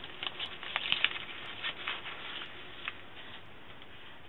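Cardstock being handled and peeled from a sticky cutting mat: light, irregular rustling with small crinkles and ticks that die away after about three seconds.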